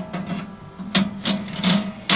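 Metal grill grate being set back onto a kamado grill with metal tongs, scraping and clinking in a few sharp strokes from about a second in.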